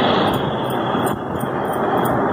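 Steady, fairly loud rushing background noise with no distinct events, like a fan or air-conditioner running close to the microphone.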